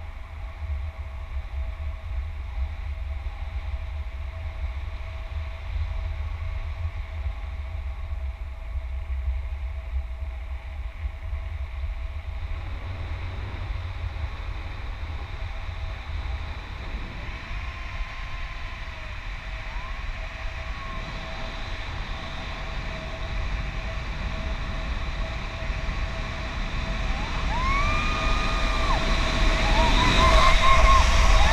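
Wind buffeting an action camera's microphone in flight under a tandem paraglider, a steady low rumble. Near the end a few short tones rise and fall in pitch over it.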